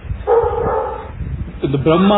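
A short, high-pitched call held for under a second, then a man's voice starts near the end.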